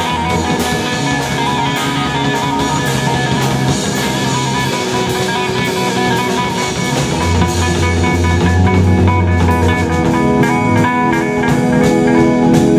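Live jazz band playing: an electric guitar leads over electric bass and a drum kit, with cymbals keeping a steady beat.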